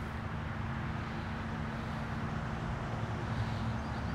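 Steady background hum: a constant low tone under an even wash of noise, with no distinct event.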